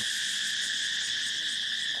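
Steady chorus of insects, a continuous high-pitched drone that holds level without a break.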